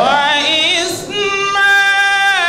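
A man reciting the Qur'an in a melodic chanted style into a microphone, in a high voice. He sings a rising, ornamented phrase with quick wavering, then holds a long steady note from about a second in.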